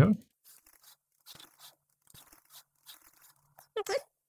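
Faint, irregular key clicks of typing on a computer keyboard.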